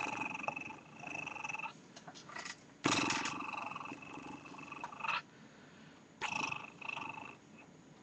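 A man making a wordless noise with his throat and open mouth, in three bursts of one to two seconds with short pauses between.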